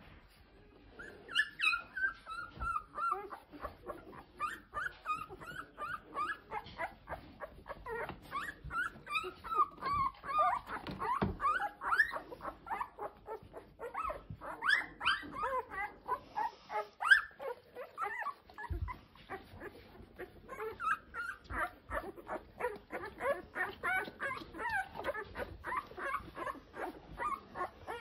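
A litter of ten-day-old golden retriever puppies squeaking and whimpering, many short high calls overlapping one another, with small clicks from the pups moving about. The calls ease off for a few seconds past the middle.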